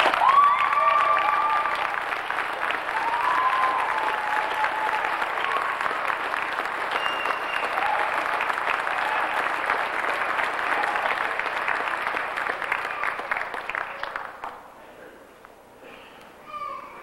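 Audience applauding, a dense clatter of many hands clapping that dies away about fourteen seconds in.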